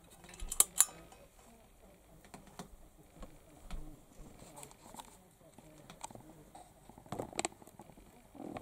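Two sharp clicks of a light switch just under a second in as the room lights are turned off, followed by faint scattered ticks and a few more knocks near the end.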